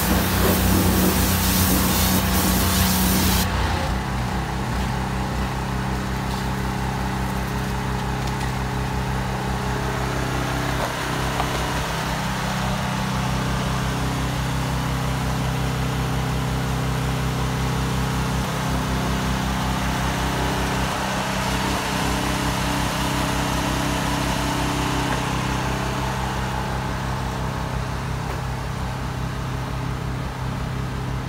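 Pressure-washer spray hissing for the first few seconds, then cutting off suddenly, leaving an engine running steadily at idle.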